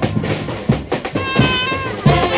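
Military brass band playing: trumpets and other brass over drum beats, with a held high brass note that bends slightly in pitch in the second half.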